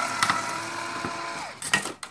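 Small cordless power drill running with a steady motor whine as it backs a screw out of a DVD player's casing. The motor winds down and stops about three-quarters of the way through, followed by a few clicks and knocks as the parts are handled.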